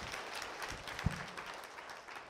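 Congregation applauding, the clapping dying away. A single brief low thump about a second in.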